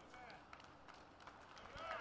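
Near silence: faint outdoor background, with a couple of faint, brief sounds.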